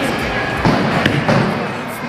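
Bowling ball thrown onto the lane, thudding down about two-thirds of a second in, with a second thump about half a second later, over the busy hall noise of a bowling alley.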